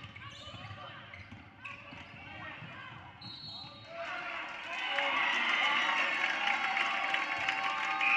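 Basketball dribbled on a hardwood gym floor amid scattered voices, then about halfway through many voices of players and spectators rise into loud shouting.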